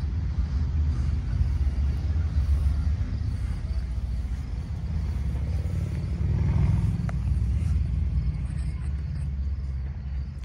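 Small-block Chevy 350 V8 with a tunnel ram and two four-barrel carburettors idling with a steady low rumble, a little louder about six to seven seconds in.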